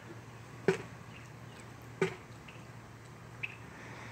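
Two sharp taps about a second and a half apart over a low steady hum, with a brief faint chirp near the end.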